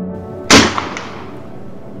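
A single loud gunshot about half a second in, with a ringing tail that fades over about a second.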